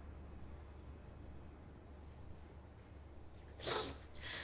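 A tearful woman sniffs once, sharply, near the end, over a faint low steady hum.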